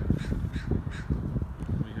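A crow cawing, about three harsh calls in quick succession in the first second, over a low rumble.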